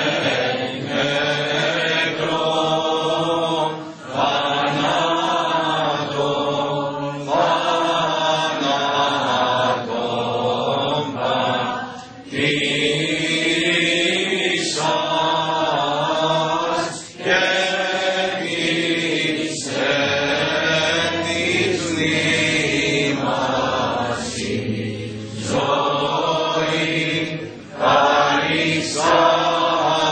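Greek Orthodox church chant: voices singing a hymn in long, sustained, gliding phrases, with brief breaks for breath every few seconds.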